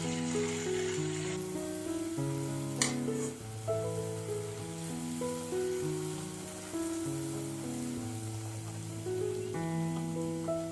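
Ney pathal deep-frying in hot oil in an aluminium kadai, with a steady sizzle. One sharp click about three seconds in.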